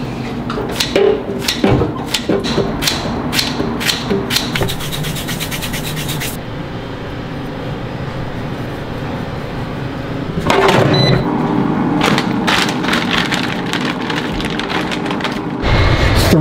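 A scissor-style vegetable chopper snipping a zucchini and a yellow squash into slices, the cuts falling into an air fryer basket. Sharp snips and clicks come close together for the first six seconds, with a fast run of them near the end of that stretch. After a quieter spell, more clicks and handling noise follow.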